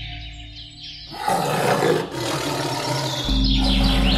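Dubbed tiger roar sound effect. It starts suddenly about a second in and lasts about two seconds, with a brief break midway, over background music and bird chirps.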